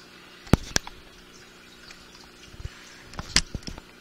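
Handling noise: a few sharp clicks and light knocks as small fishing tackle, brass three-way swivels, is picked up and handled on a table. Two come about half a second in and a short cluster about three seconds in.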